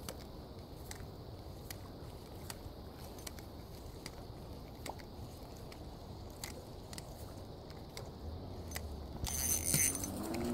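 Spinning reel and rod being worked to retrieve a topwater popper: faint, evenly spaced clicks a little under a second apart. Near the end comes louder rubbing and handling noise close to the microphone.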